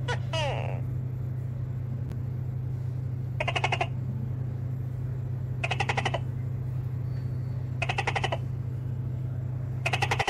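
An animal call: short bursts of rapid clicks, each about half a second long, repeated four times roughly two seconds apart, over a steady low hum. A falling, sweeping call sounds in the first second.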